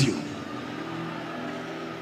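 Soft background music: a low chord held steady through a pause in the preaching, over the hall's faint room noise.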